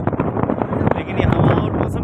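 Wind rumbling on the microphone, with people's voices talking over it.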